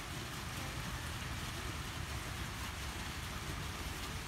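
Steady splashing of a water fountain into a pond, with a low rumble of wind on the microphone underneath.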